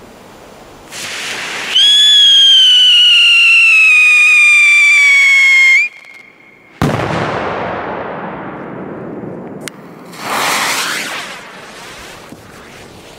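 Whistling firecracker: a short fuse hiss, then a loud whistle for about four seconds, its pitch slowly falling, that cuts off suddenly. About a second later comes a single loud bang with a long echo. A brief hiss follows near the end.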